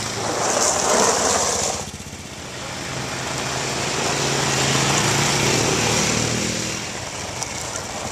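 Small quad bike engines running on a dirt track. The sound is loud at first, drops suddenly about two seconds in, then swells and fades again.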